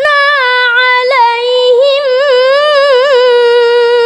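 Qur'an recitation in tartil style: a single high voice holds one long drawn-out note without a break, wavering in small ornamental turns around a steady pitch.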